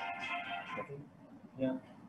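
A mobile phone ringtone melody playing in steady tones, then cutting off a little under a second in as the call is answered; a short spoken "yeah" near the end.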